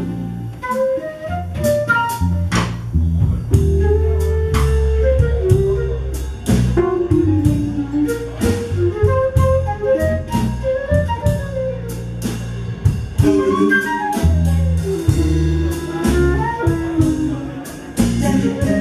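Live jazz-blues band playing: a flute takes the lead melody over electric bass guitar, keyboards and drum kit, with the saxophone heard at the start.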